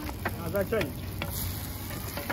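Lachha parathas frying in oil on a large iron tawa, a steady sizzle, with a few clicks of metal tongs as a paratha is turned. A short voice breaks in about half a second in.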